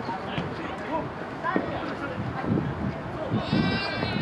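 Players' voices calling and shouting on a futsal pitch during play, with a loud, high-pitched shout near the end.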